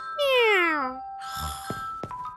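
Cartoon cat snoring in its sleep: a meow-like sigh that glides downward on the out-breath, then a short, noisy, low snore on the in-breath about a second and a half in. Soft background music plays underneath.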